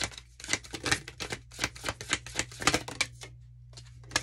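A deck of tarot cards being shuffled by hand: a quick, irregular run of card flicks and taps, stopping about three seconds in.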